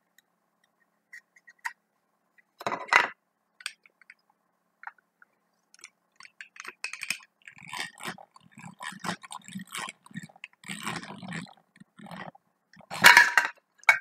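Hand drill with a crank wheel boring a hole through a plastic meter-case foot: irregular scraping and clicking of the turning gears and bit. A louder clatter comes near the end.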